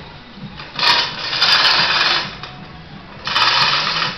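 Hand-operated hoist on a homemade crane being worked while it turns a steel swing keel of about 800 kg, giving two loud bursts of rapid mechanical clatter: one about a second and a half long starting near the first second, and a shorter one near the end.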